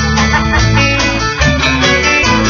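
Live band playing an instrumental passage with no vocals: plucked guitar and mandolin lines over a steady bass line and light drums.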